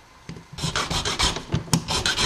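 Small hand file rasping across a metal key blank in a run of short, uneven strokes that begin about half a second in. The file is deepening one cut a little more to fit the lock's pin.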